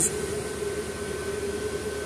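Steady store background: an even hiss with a constant hum tone, like ventilation or refrigeration running, and no distinct events.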